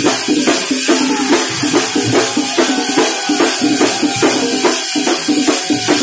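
A thambolam troupe of many large double-headed drums beaten with sticks, playing a loud, fast, driving rhythm.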